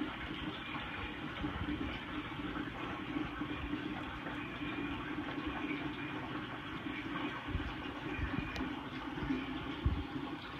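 Steady rush and gurgle of water circulating in a reef aquarium, with a low hum underneath. A few dull knocks come through, the plainest one near the end.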